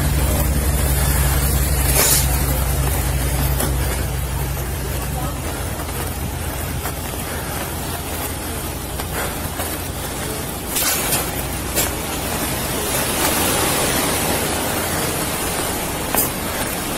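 A vehicle engine idling with a steady low hum that fades out after about five seconds. Under it runs an even hiss of wind and rustle on a body-worn camera's microphone as the wearer walks, with a few light clicks.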